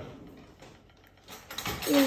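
A quiet pause with only faint room sound, then a person's voice starts speaking near the end.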